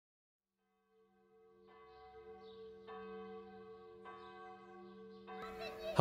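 A large bell tolling, struck four times a little over a second apart, fading in from silence; each strike's deep hum rings on beneath the next.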